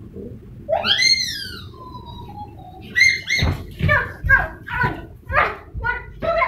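A child's voice: a high squeal that rises and falls about a second in, then a string of short, rhythmic shouted syllables about two a second.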